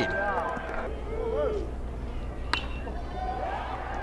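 Ballpark crowd murmur with a few voices calling out over a steady low hum, and one sharp crack a little past halfway through.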